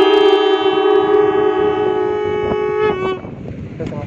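Many conch shells blown together, holding one long, loud note that dies away about three seconds in as the players stop one after another.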